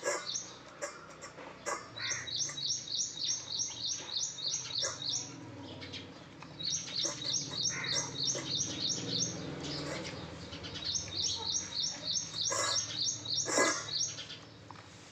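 German Shepherd lapping from a stainless-steel bowl in three bouts of quick, even laps, about four a second, with short pauses between them and a couple of louder knocks near the end.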